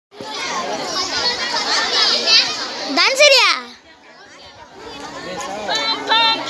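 A crowd of children chattering and calling out all at once, with one loud child's cry that rises and falls in pitch about three seconds in; the chatter drops off briefly after it and then builds again.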